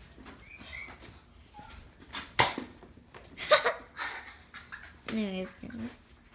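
A dog yelping and whining in short, separate calls, one falling in pitch near the end, with a sharp knock about two and a half seconds in.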